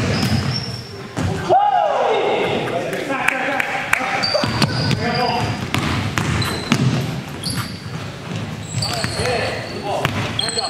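Basketball game sounds in a large gym: a basketball bouncing repeatedly on the hardwood floor, sneakers squeaking, and players' voices with a laugh at the start, all echoing in the hall.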